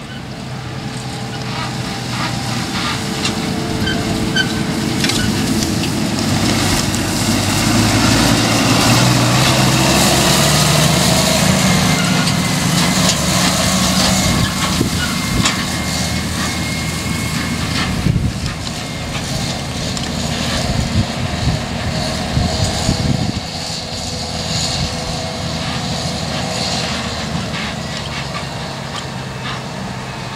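Farm tractor towing a grain trailer across a stubble field, its diesel engine note climbing as it pulls away, then running steadily, with scattered knocks and rattles from the trailer.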